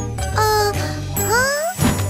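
Cartoon magic sound effects over a steady background music bed: a sparkling chime jingle, then a rising glide with more sparkle, and a short swish near the end.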